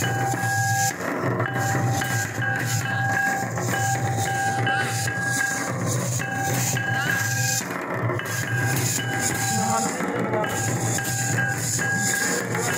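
Loud folk drumming from a troupe of rope-laced barrel drums, beaten together in a steady dance rhythm with a jingling rattle over it. A steady high note cuts in and out over the drums several times.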